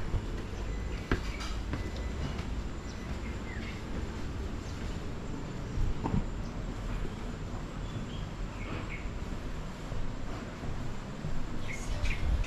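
Open-air ambience with a steady low rumble and a few short bird chirps, one a few seconds in and another near nine seconds. Two soft knocks come about a second in and again around six seconds.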